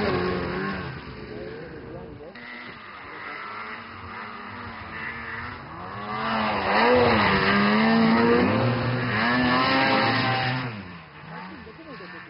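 Snowmobile engines revving, the pitch climbing and dropping again and again with the throttle; quieter in the first half, loudest from about six to ten seconds in, then falling away.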